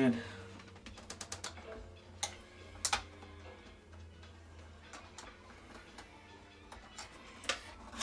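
Small plastic clicks and knocks as a Braun shaver cleaning station and its cleaning-fluid cartridge are handled and fitted together. There is a quick run of light clicks about a second in, two sharper clicks a second or so later, and another click near the end.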